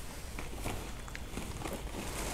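Faint handling noise: a few scattered light clicks and rustles as a bag is picked up off camera.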